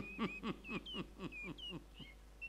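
A bird calling a rapid run of short notes, about five a second, each dropping in pitch. The call is fairly faint.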